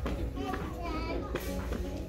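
Background voices of other shoppers, a child's voice among them, over faint store music.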